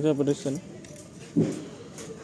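A man's voice making a short sound in the first half second, then background noise with one dull knock about one and a half seconds in.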